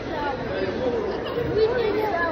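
Indistinct voices talking: chatter with no clear words, heard in a large indoor hall.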